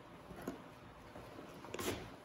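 A two-handled fleshing knife scraping membrane off a lynx pelt stretched on a wooden fleshing beam. Faint strokes, with a soft one about half a second in and a louder, brief scrape near the end.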